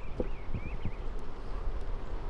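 Wooden hive frames and a metal hive tool knocking and clicking against a wooden hive box as frames are set down, a few light knocks spread through, with wind rumbling on the microphone. A faint wavering whistle sounds in the first second.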